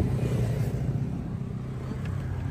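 Honda Civic's 1.8 i-VTEC four-cylinder engine idling steadily, a low even hum, with a short click at the start as the driver's door handle is pulled.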